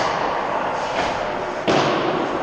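Two sharp knocks about a second and a half apart, each ringing briefly in a large ice rink over a steady background noise: pucks or sticks striking the boards in ice hockey play.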